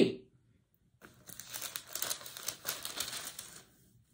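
Paper crinkling and rustling as it is handled, a crackly run of fine clicks starting about a second in and stopping shortly before the end, quieter than the voice around it.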